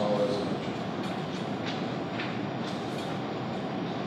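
Steady background room noise: an even hiss and rumble with no voice.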